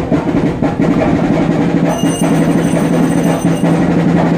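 Fast, steady festival drumming over a sustained low drone. A thin high ringing joins about halfway through.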